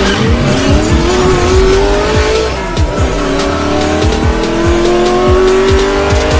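A racing car engine sound effect accelerating over intro music. Its pitch rises steadily, drops back about two and a half seconds in as if shifting up a gear, then climbs again.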